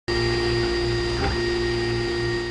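JGAurora 3D printer running, its motors giving a steady whine of several held tones over a low hum.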